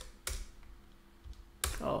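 A few keystrokes on a computer keyboard: a sharp click, then another a quarter second later. Near the end a man says a short "oh".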